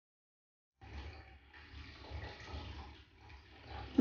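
Faint, uneven rustling of cloth being handled and rolled up on a carpet, a fabric hijab being rolled into a tight bundle; it comes in about a second in after dead silence.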